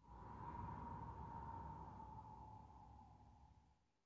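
Faint logo sound effect: a single held tone with a low rumble beneath it, its pitch sinking slightly as it fades away over about four seconds.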